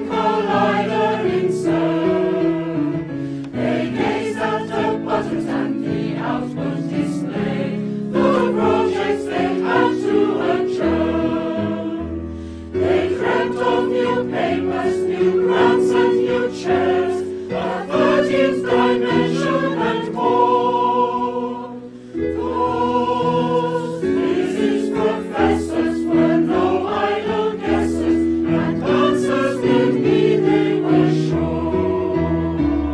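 A choir singing held chords that move from note to note, with two short breaths between phrases.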